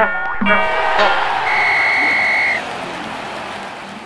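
Stadium sound effects for an animated intro: two short buzzy horn blasts at the start over a wash of crowd noise. About halfway through, a steady whistle tone is held for about a second, and then the crowd noise eases off.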